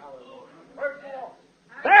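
Short, faint calls from voices in the congregation, twice, over the steady hum of an old tape recording, before the preacher's voice comes back near the end.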